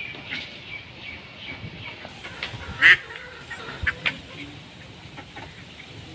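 Birds calling in a series of short, sharp calls, probably backyard poultry, with the loudest call about three seconds in.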